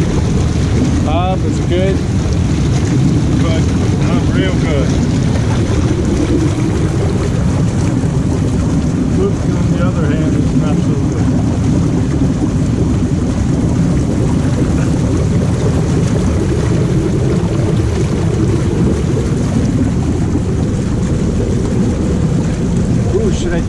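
Hot tub jets running: a loud, steady rush of churning water that starts suddenly and holds evenly.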